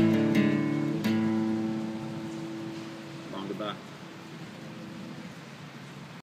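Acoustic guitar's last strums, one at the start and one about a second in, then the final chord ringing and slowly fading. A brief vocal sound comes just past halfway through.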